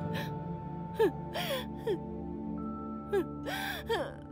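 Slow film score of long held tones, broken about half a dozen times by a person's short gasping, whimpering cries, each a quick falling sob.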